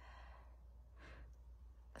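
Near silence: room tone with a faint breath, a soft exhale, about a second in.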